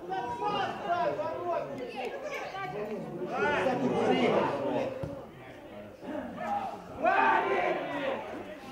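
Several voices calling and shouting over each other, with louder shouts about three and a half seconds in and again near the end.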